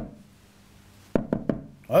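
Three quick knocks on a hard surface, knuckles rapping like a knock on a door, coming about a second in after a brief hush.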